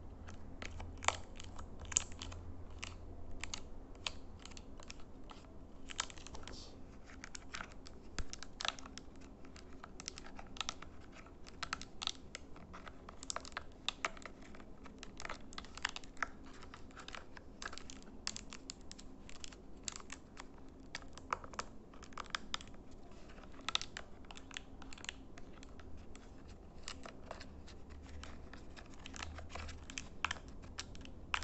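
Fingers pressing and tapping the small membrane buttons of a handheld LED light remote control, an irregular run of soft clicks and taps, several a second.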